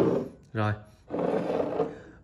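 A man's voice speaking Vietnamese: the end of a sentence, a short "rồi", then a drawn-out, grainy vocal sound.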